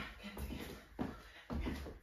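Charleston dance steps on a wooden floor: suede-soled shoes stepping and twisting, a few short scuffs and taps about every half second, with a counted word spoken over them.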